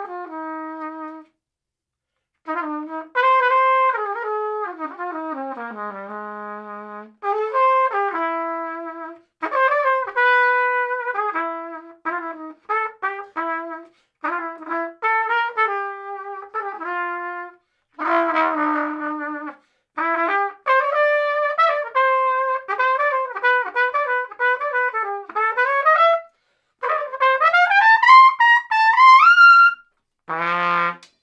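Solo trumpet played through a plastic BRAND 'Perfect' mouthpiece: a made-up, jazzy solo of short phrases and separate notes with brief rests between them, ending in a rising run near the end.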